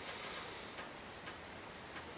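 Radiation Alert Inspector Geiger counter clicking irregularly, a few faint clicks over a steady hiss. The slow, random clicks are the detector counting background radiation.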